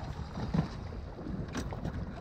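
Wind rumbling on the microphone aboard a small boat on open water, with a low thump about half a second in.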